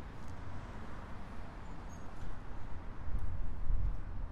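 City street ambience: a steady wash of traffic noise, with a low rumble on the handheld microphone that swells near the end.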